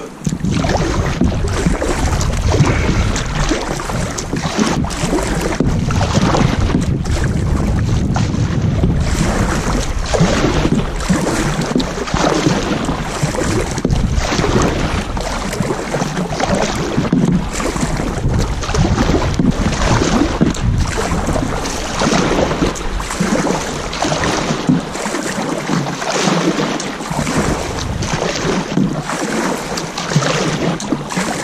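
Double-bladed kayak paddle dipping into calm sea water in a regular stroke rhythm, each stroke a brief splash and swish, over a steady rumble of wind on the microphone.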